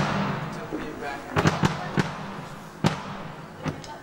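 Drum kit struck in a soundcheck, one hit at a time: a loud cymbal crash with a ringing wash at the start, then a few separate drum hits about a second and a half in, and two more near the end.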